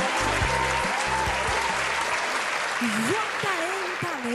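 Audience applause over the last bars of a backing track, whose bass notes stop about two seconds in; a voice calls out near the end.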